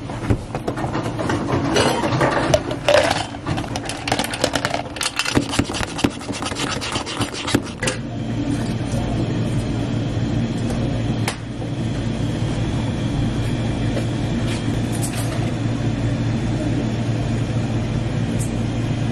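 Ice cubes scooped and clattering into a plastic cup for several seconds. After that, a steady low machine hum runs on to the end.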